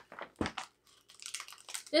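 Small plastic snack packets crinkling as they are handled and passed around: a few sharp crackles in the first half second, then a softer, steady crinkle through the second half.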